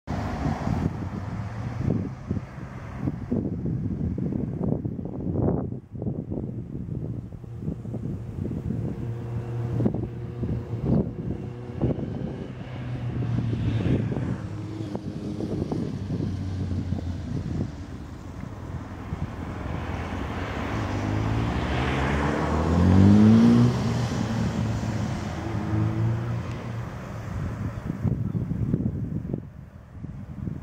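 Wind buffeting the microphone, with the hum of an unseen engine-driven vehicle that swells, bends in pitch as it passes, and is loudest a little over two-thirds of the way through before fading.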